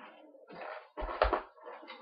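Handling noise on a desk: a short rustle, then a dull thump with a brief clatter about a second in, as objects are picked up and moved.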